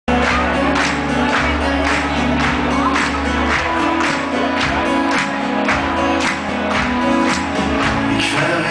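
A live rock band playing loudly through a concert PA, with a steady drum beat of about two beats a second over sustained bass and guitar.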